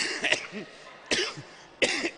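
A man laughing into the microphone in about four short, breathy bursts.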